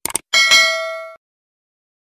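Sound effect of a quick double mouse click followed by a bright bell ding that rings for under a second and cuts off suddenly: the notification-bell sound of a subscribe-button animation.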